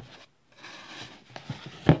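Rustling and scraping as hands rummage through items in a cardboard shipping box, ending in a sharp knock near the end.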